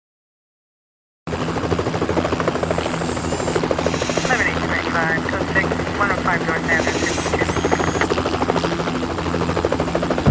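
After about a second of silence, a track opens abruptly with a steady low mechanical drone and a voice talking over it, before the music proper begins.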